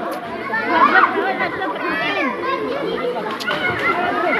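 Many voices of children and adults chattering at once, overlapping and unbroken, as a group plays in a swimming pool.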